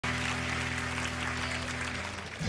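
Applause: a dense clatter of many hand claps over a steady low held musical tone, both fading just before an acoustic guitar chord begins.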